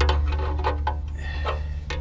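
Light metal clicks and taps from handling the oil-pan drain plug and tools under the van, over a steady low hum.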